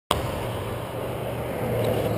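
Steady outdoor roadside noise with a low, even hum underneath.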